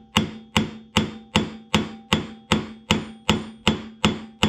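Steady, evenly paced hammer taps on the seized two-stroke engine of a Ryobi SS30 string trimmer, about ten strikes at roughly two and a half a second, each with a short metallic ring. The taps are meant to drive the stuck piston through a tight spot in the bore and free the engine.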